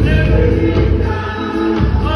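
Live reggae band playing with a man singing lead into a microphone.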